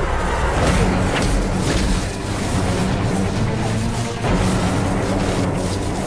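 Dramatic film score with sustained low notes, layered with loud booming, rumbling sound effects and a few sharp hits, swelling louder about four seconds in.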